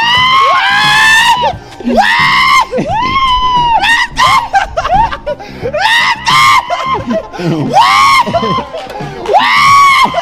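Two people shrieking and whooping with laughter, a string of long, high cries about a second each with short gaps between them.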